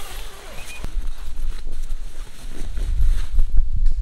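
Gusty wind rumbling on the microphone, with a few light knocks and rustles as someone steps across the tent floor and out through the door.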